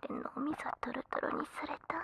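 A woman whispering, with short voiced stretches breaking through.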